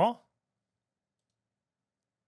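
The end of a spoken word, then silence, the audio gated to nothing.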